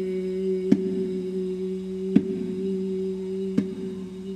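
A voice holds one long, low, steady note of a chant. A baby bongo is struck three times at an even pace, about once every second and a half.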